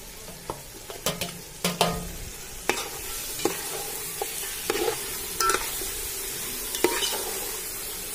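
Mutton pieces sizzling as they are stirred into hot red masala in a steel pot. A steel ladle clinks and scrapes against the pot about once a second. The sizzle grows louder after the first few seconds.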